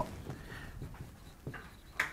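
Whiteboard marker writing on a whiteboard: faint, scattered short scratchy strokes.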